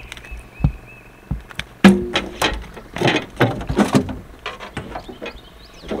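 A string of knocks and thumps as two freshly caught crappie are unhooked and handled in a boat and a cooler lid is opened. The loudest thump comes about two seconds in.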